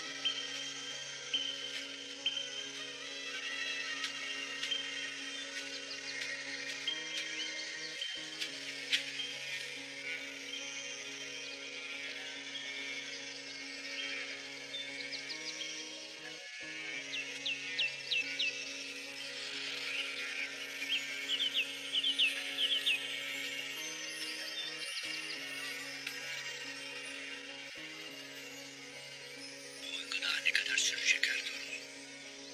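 Slow background music of held chords that shift every several seconds, with short high bird chirps scattered over it, mostly in the second half.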